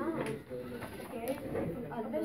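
Faint background chatter of several voices, with no clear single speaker.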